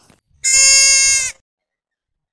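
A single high-pitched animal bleat, steady in pitch, lasting about a second.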